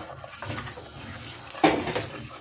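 Wooden spatula stirring and scraping whole spices (cumin, ajwain, coriander seed, black pepper) as they dry-roast in a hot pan, a steady dry rustle with a louder stroke about one and a half seconds in.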